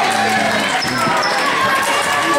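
Basketball game sounds in a gym: voices calling out from the court and sideline over players' footfalls on the hardwood floor, with a couple of short high squeaks about a second in.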